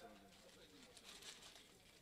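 Near silence: a brief pause in a man's amplified speech, with faint room tone and a few very faint sounds about a second in.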